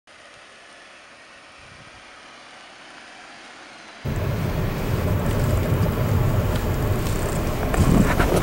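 Faint, quiet outdoor sound at first; then, about halfway through, a sudden switch to a loud, low rumble of road and wind noise as heard from inside a moving car, with a few light clicks.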